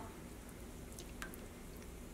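Faint drips and small liquid squishes as wet superwash merino yarn is moved around in a pot of hot dye, over a low steady hum.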